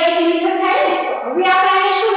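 A woman's voice in a drawn-out, sing-song delivery close to singing, with long held notes.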